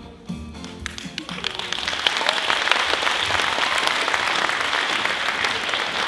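A live band's song ends on its last chord about a second in, and the audience breaks into applause that swells and holds.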